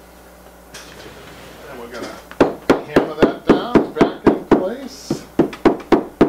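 Wooden upholstery mallet striking the chair repeatedly, a quick, even run of sharp knocks at about three to four a second that starts about two and a half seconds in.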